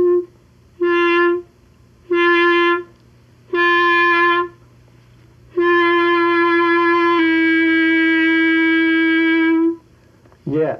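Clarinet playing the same note four times in short notes, then holding it for about four seconds. About seven seconds in, the held note shifts slightly lower in pitch.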